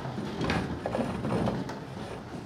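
A roomful of people getting up from their seats: chairs and desks creaking, knocking and scraping irregularly, with shuffling.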